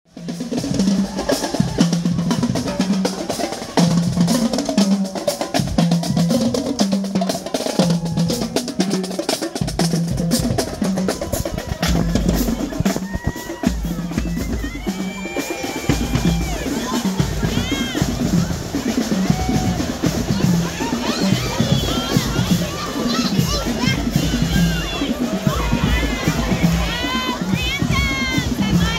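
High-school marching drum line playing a cadence, with rapid snare strokes over a pulsing bass drum beat. From about halfway on, a crowd's chatter and children's shouts rise over the drumming.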